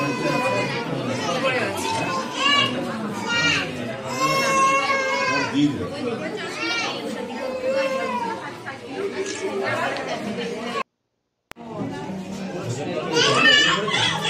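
Chatter of several voices in a crowded room, including high-pitched young children's voices. The sound cuts out completely for about half a second, a little under three seconds before the end.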